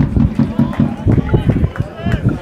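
Shouts and calls from football players on the pitch, heard faintly over a loud, uneven low rumble.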